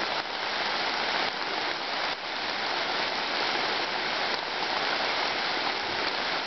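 Steady rain falling on the leaves of a deciduous forest.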